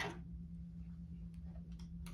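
A short laugh right at the start, then a few faint, light clicks near the end over a steady low hum.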